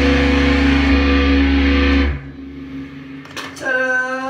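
A rock band's last chord ringing out on distorted electric guitar and bass, held steady, then cut off sharply about two seconds in. A short voice follows near the end.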